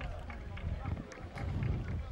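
Football-pitch ambience: a low steady rumble with faint, scattered distant voices.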